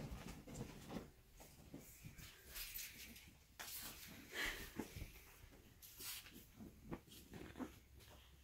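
Faint rustling of a towel and bedding in short, irregular bursts as a small, freshly bathed dog is rubbed dry and burrows under the towel, mixed with the dog's breathing.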